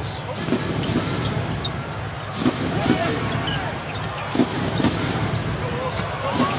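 A basketball being dribbled on a hardwood court, several uneven bounces, over steady arena crowd noise.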